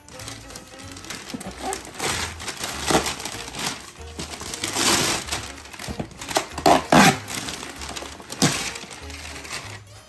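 Wrapping paper being torn and crinkled off a gift box, in several short rustling bursts, over background music with a steady bass beat.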